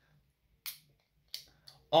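Aluminium drink can's pull-tab being cracked open: two short sharp snaps about two-thirds of a second apart, with a faint tick after.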